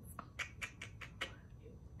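A quick run of about six light, sharp clicks or taps in the first second and a bit, then faint room tone.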